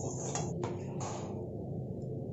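A metal spatula scraping and knocking against a steel kadhai three or four times in the first second as cooked vegetables are scooped out, followed by a low steady background hum.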